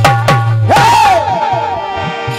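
Dholak strokes at about three a second stop about half a second in, over a held harmonium chord. A loud, high vocal cry then rises and falls away.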